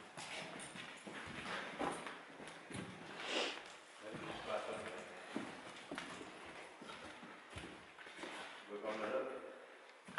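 Footsteps on a hard indoor floor, irregular, with faint low speech in places.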